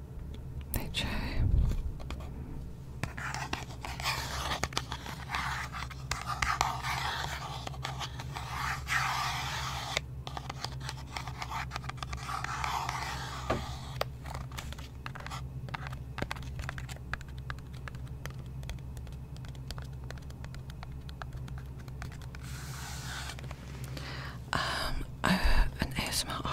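Fingernails tapping and scratching on a small cardboard skincare box held close to the microphone: a long run of quick light taps and scrapes.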